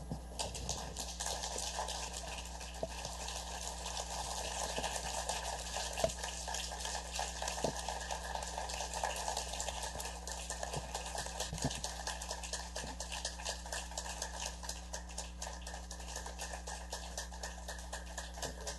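Audience applauding: many hands clapping, thinning out toward the end.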